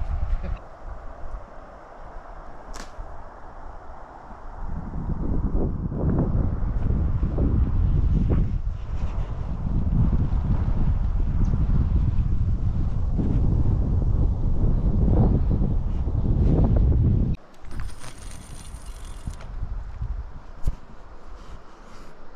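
Wind buffeting the camera's microphone: a loud, gusty low rumble that starts a few seconds in and cuts off suddenly about three-quarters of the way through.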